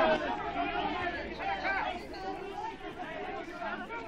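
Chatter of a group of people talking over one another while walking together outdoors.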